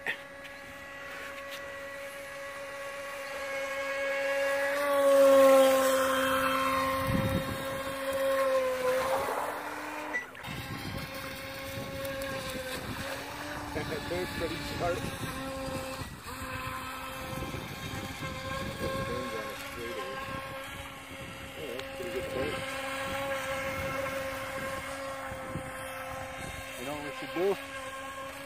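Feilun FT012 RC racing boat's brushless motor and propeller whining steadily at speed on the water. The whine swells louder about five seconds in and drops in pitch near nine seconds, then holds steady.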